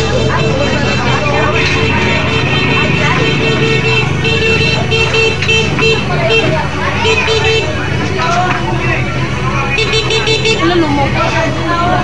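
Steady low drone of a fire truck's engine running, with people talking over it and a tone repeating on and off for the first several seconds.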